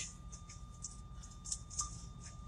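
Low, steady rumble of a moving truck heard from inside the cab, with a thin steady tone and a few faint clicks.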